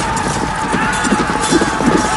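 Battle-scene soundtrack of cavalry horses galloping in a charge, hooves pounding, mixed with men's shouts and a held tone, with heavier thuds in the second half.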